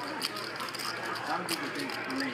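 Low background chatter around a poker table, with a few light clicks from poker chips being handled.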